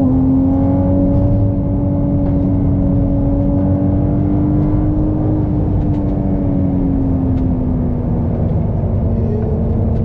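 Ferrari 296 GTB's twin-turbo V6 engine running hard at a steady high speed on track. Its note rises slightly, then eases down gently about two-thirds of the way through, over a heavy rumble of road and wind noise.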